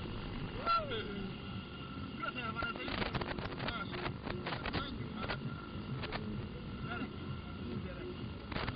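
Indistinct voices over a steady low rumble, with one short call near the start and a cluster of sharp clicks and knocks in the middle.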